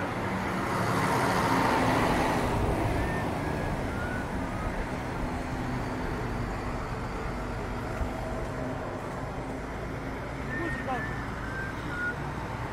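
A road vehicle passes close by, loudest for the first few seconds, then fades into steady street traffic noise.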